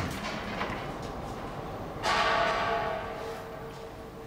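A wooden door being pulled open and swinging, its clatter fading at the start. About two seconds in, a ringing, bell-like tone sets in and dies away slowly.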